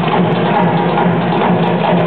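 Live maculelê music: tall hand drums beating a steady rhythm, with wooden sticks clacking against each other in time.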